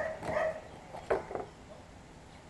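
A standard poodle barks twice, short and sharp, about a second in.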